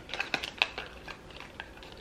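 Light clicks and taps of a small plastic gel tube and its cardboard box being handled, several quick ones in the first second, then fainter and sparser.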